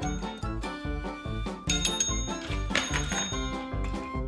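Background music, with a service bell dinged twice over it, once a little before halfway and again about a second later; each ding rings on for most of a second.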